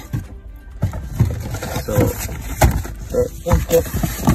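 A man's voice speaking briefly over a background music track.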